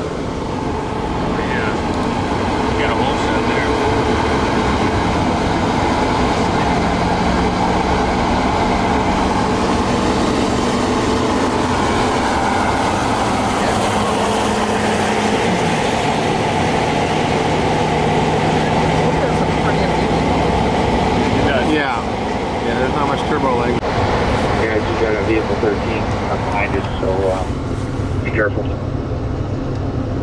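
Cab interior of a 2015 Chevrolet Silverado HD pickup accelerating hard up a grade: its Duramax turbodiesel engine runs under load over road and wind noise. The engine note steps down in pitch about halfway through, as the transmission upshifts. The sound changes after about 22 s, with voices over the road noise.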